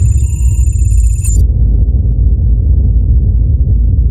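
Intro sound effect: a loud deep rumbling drone, with high electronic beeps and tones over it that cut off about a second and a half in, leaving the rumble alone.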